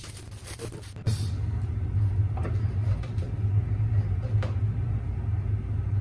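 A steady low rumble comes in suddenly about a second in and carries on, with a few light clicks from a small metal bench vise being handled.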